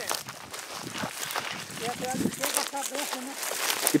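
Footsteps through dry grass and brush, dry stems crunching and rustling underfoot in an irregular patter, with a faint voice in the background near the middle.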